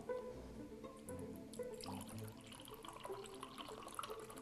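Aloe vera juice poured from a carton into a drinking glass, a faint trickle of liquid, over quiet background music.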